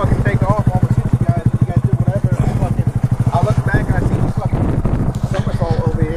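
Honda Grom's 125 cc single-cylinder four-stroke engine idling steadily, with even exhaust pulses at about a dozen a second.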